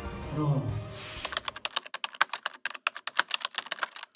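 Pitched music or voice fades out about a second in. Then comes a fast, even run of sharp keyboard-typing clicks, about ten a second, that lasts to the end: a typing sound effect laid over a title card.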